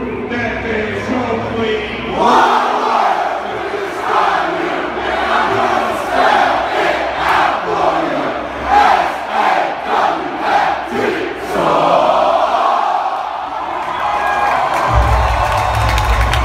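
Large arena crowd at a live wrestling show cheering and chanting in a rhythmic pulse, with music beneath. A deep low rumble comes in near the end.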